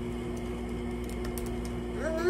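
Steady low electrical room hum with two constant tones, and a few faint clicks about half a second to a second and a half in.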